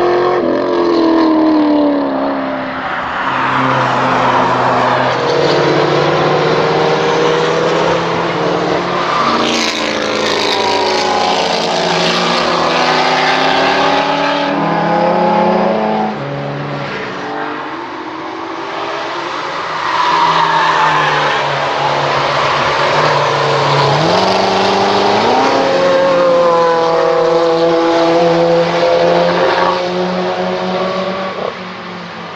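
Performance car engines on a race circuit, revving hard and climbing in pitch through the gears, dropping at each shift as the cars pass. First a Chevrolet Camaro, then from about 16 s in a group of several cars; the sound dips briefly and builds again about 20 s in.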